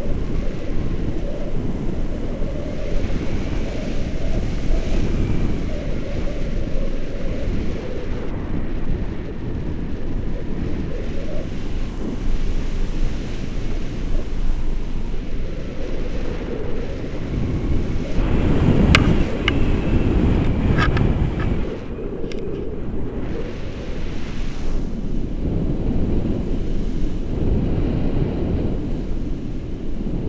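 Wind buffeting the microphone of a camera flying with a paraglider, a steady low rushing that swells slightly about two-thirds of the way through, when a few sharp clicks come through.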